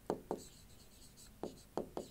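Marker writing on a board: about five short, faint scratchy strokes as a word is handwritten.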